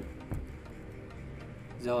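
A few computer keyboard keystrokes clicking in the first half-second, then low room tone; a man's voice says one word at the very end.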